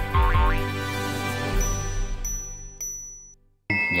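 Bright title-card jingle with a rising boing effect near the start and a few high dings, which stops abruptly. Near the end, a small Japanese brass bell is struck and rings with a steady, clear tone.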